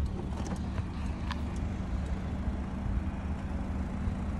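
Power liftgate of a Chevrolet Equinox opening under its own motor: a steady low motor hum with a faint click about a second in.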